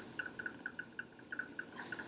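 Ballpoint pen writing cursive on a small sheet of paper: faint, quick scratches several times a second.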